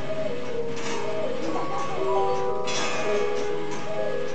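Upright disc music box playing a tune: the turning metal disc plucks its steel comb, giving overlapping ringing metallic notes.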